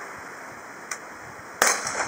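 A single shot from a Beretta Px4 Storm CO2 air pistol firing a pellet, a sharp crack near the end, with a fainter tick just after it.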